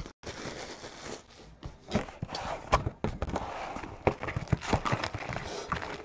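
Plastic shrink wrap and cardboard crinkling and rustling under hands as a trading-card box is opened and its packs handled, with irregular small clicks and knocks.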